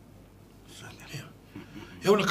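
A pause in a conversation: quiet studio room tone with a soft, faint murmur of voice or breath about halfway through.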